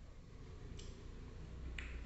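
Plastic stylus tapping on the screen of an LCD writing tablet as it is written on: two faint, short clicks about a second apart.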